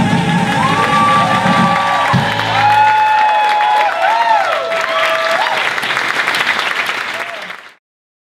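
The last held sung note and final chord of a live piano-bass-drums band, giving way after about three seconds to an audience applauding with whoops and cheers. The applause fades out sharply just before the end.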